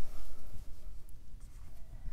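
Dry-erase marker writing on a whiteboard: short rubbing strokes of the felt tip, with a low steady hum underneath.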